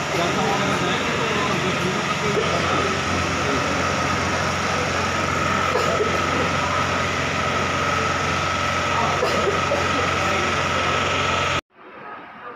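Busy railway station platform: many voices chattering over a steady engine hum with a constant high whine. It cuts off abruptly shortly before the end, giving way to a much quieter room.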